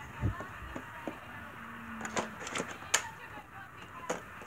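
Large plastic toy blaster being handled and lifted: a low thump near the start, then a run of sharp plastic clicks and knocks, with a short steady hum in the middle.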